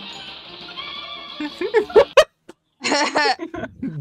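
Music and voices from an old cartoon soundtrack, with brief laughter, then a short, loud, high-pitched voice-like sound about three seconds in.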